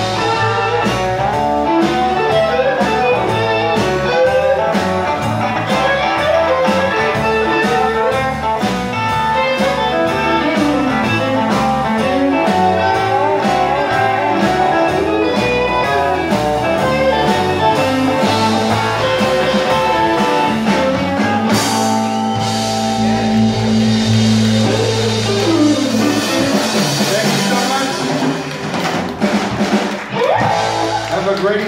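Live blues band playing: electric guitars, bass and drum kit. About twenty-two seconds in the drum beat drops away and long sustained chords ring out, as the song winds down to its close.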